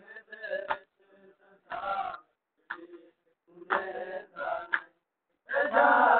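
Men reciting a noha, a Shia mourning lament, unaccompanied, in short chanted phrases broken by brief pauses; a louder phrase starts near the end.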